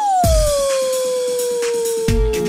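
A dog's single long howl that slides down quickly at the start and then holds, sinking slowly, with a dance-music beat coming in under it.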